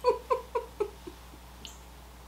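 A woman's soft laugh: a run of about six short 'ha's, each falling in pitch, fading out within about a second.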